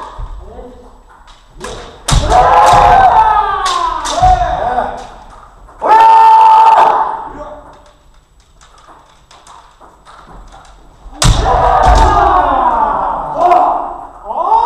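Kendo kiai shouts echoing in a large wooden-floored hall, with thuds from stamping footwork (fumikomi) and sharp cracks of bamboo shinai striking armour. Loud shouts and strikes come about two seconds in, a long held shout around six seconds, a quieter lull, then another burst of shouting and stamping about eleven seconds in.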